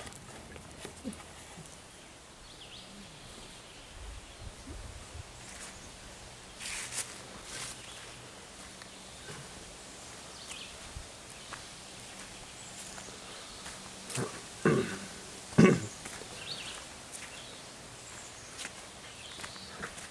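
Footsteps on a dirt, leaf-strewn trail over quiet outdoor ambience, with scattered light clicks and two louder thumps about three-quarters of the way through.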